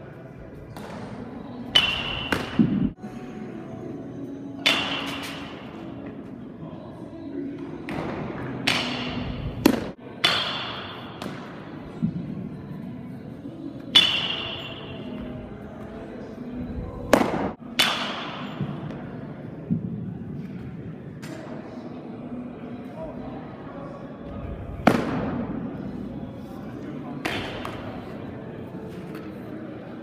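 Baseballs smacking into a catcher's mitt: sharp pops that echo through a large indoor training hall, about a dozen over the span with quieter catches and thuds in between.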